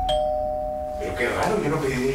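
Doorbell chime ringing a falling two-note ding-dong; the lower second note sounds right at the start and rings out for about a second.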